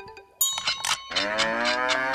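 Novelty cuckoo clock striking the hour with a cow figure that moos instead of a cuckoo: a few short clicks, then one long moo lasting about a second.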